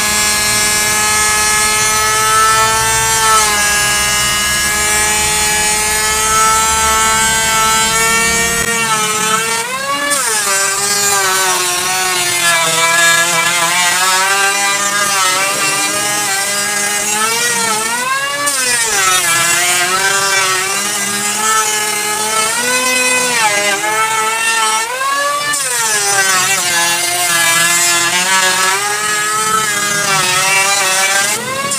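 Electric hand planer running as it is pushed along a wooden plank. Its high motor whine holds steady at first. From about nine seconds in it keeps sagging in pitch and climbing back as the blades bite into the wood and the load eases.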